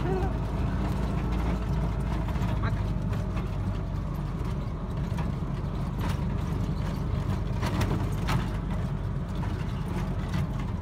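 Steady low rumble of a mototaxi's small engine and running gear, heard from inside the open cab while riding, with a few short knocks and rattles from the body in the second half.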